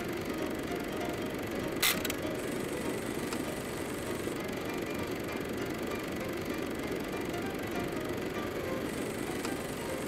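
A steady mechanical whirring, the running noise of a film projector, with one sharp click about two seconds in.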